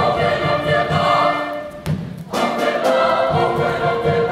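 A choir singing over a small ensemble of wind and other instruments, with low thuds underneath. About two seconds in, the music breaks off after a sharp hit and starts again a moment later.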